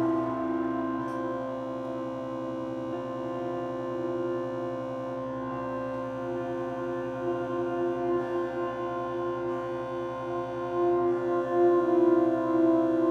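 Live drone music: a thick, sustained chord of steady tones from electric guitar and organ, held with almost no change. It swells a little louder near the end.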